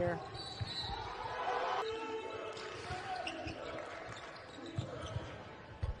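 A basketball bouncing on a hardwood court during live play: a few separate thumps over low court noise and faint voices.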